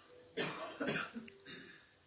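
A person coughing a few times in a small room: two louder, short coughs about half a second and a second in, then quieter ones trailing off.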